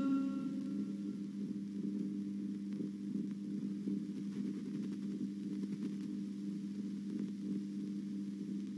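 A faint, steady low hum with a light hiss, holding two low tones, after the tail of the background music dies away in the first second.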